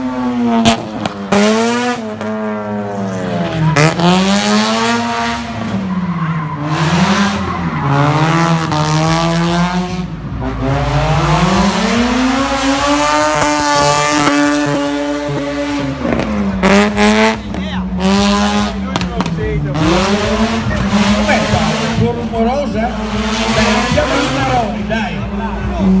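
Drift car's engine revving up and falling back over and over, held high for a few seconds around the middle, with its tyres squealing as it slides sideways through the course.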